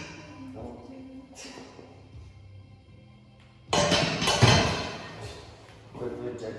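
Loaded barbell racked onto the metal hooks of an incline bench press, a sudden loud clank and thud a little under four seconds in that rings and dies away over about a second.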